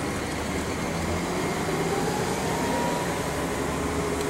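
Steady city traffic noise: a low rumble of passing vehicles, with a faint thin whine for a second or two in the middle.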